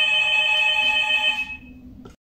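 A phone ringing: a steady electronic tone of several pitches at once that stops about one and a half seconds in.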